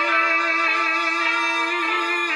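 Shigin poetry chanting: a male chanter holds one long note with a slight wavering, over a recorded orchestral accompaniment.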